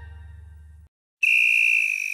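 The last notes of a children's song fade away, then after a brief silence a single steady high whistle blast starts a little past halfway through and holds.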